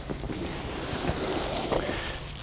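Soft, continuous rustling of clothing and sheets as a client's leg is shifted and repositioned on a padded massage table.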